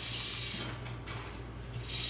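VEX IQ walking robot's single motor and plastic gear train running as the legs step, a steady low mechanical hum. A higher hiss over it drops away about half a second in.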